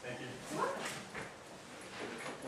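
Indistinct human voice, low in level and not picked up as words, with a rising pitched note about half a second to a second in.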